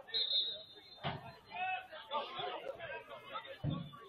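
Indistinct chatter of people talking near the microphone, with a short high steady tone during the first second.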